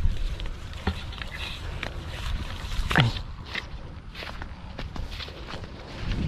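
Footsteps through a farm field, soft irregular steps on dry soil with brushing of leaves, the loudest step about three seconds in, over a low rumble of wind on the microphone.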